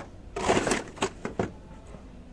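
Cardboard-backed plastic blister packs of toy cars rustling and clacking as they are rummaged through in a bin: a short rustle, then a few light clicks.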